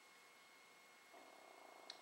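Near silence: hiss with faint steady tones from the recording equipment. A faint low sound starts about halfway through, and there is a single small click just before the end.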